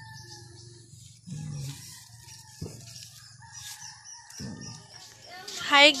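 Faint farmyard chickens, with a rooster crowing in the background; a single click about two and a half seconds in.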